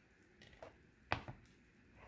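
Hands handling a wooden salad bowl: a few light taps and clicks, the sharpest about a second in, with a weaker one just after.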